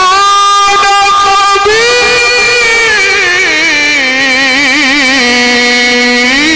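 A male reciter chanting the Quran in the ornamented mujawwad style, amplified through a microphone. He draws out long melismatic held notes with a wavering ornament, rising in pitch about two seconds in and stepping down to a lower held note around the middle.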